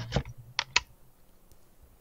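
A plastic UV curing lamp being set down and switched on: about five sharp clicks and taps in the first second.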